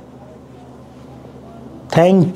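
Quiet room tone with a faint voice-like murmur, then a man's voice starts abruptly and loudly just before the end.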